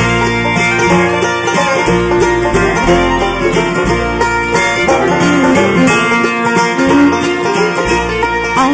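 A bluegrass band playing the instrumental opening of a song on banjo, acoustic guitars, resonator guitar, mandolin, fiddle and upright bass, before the vocals come in.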